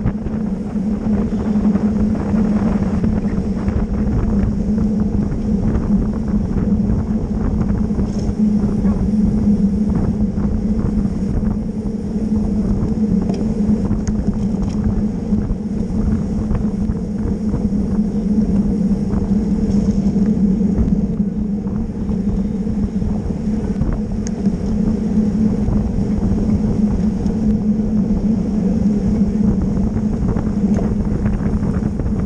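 Wind rushing over the microphone of a camera riding at race speed on a road bicycle, mixed with tyre and road noise and a steady low hum.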